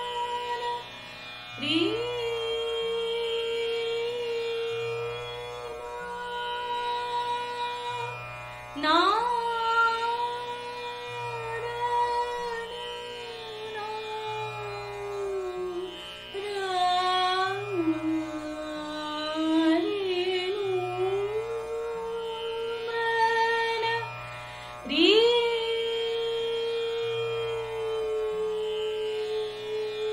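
Dhrupad singing in Raag Jaijaiwanti: long held vocal notes, three of them reached by an upward glide, with a slower wavering passage dipping lower in the middle. Underneath runs a tanpura drone that repeats its plucked cycle about every two seconds.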